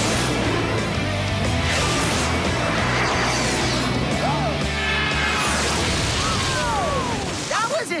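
Cartoon jet aircraft sound effect: a long, loud roaring rumble as the jet flies over, dying away near the end, mixed with background music and children's excited exclamations.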